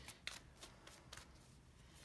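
Faint shuffling of a tarot deck by hand: a handful of soft, quick card flicks and slides.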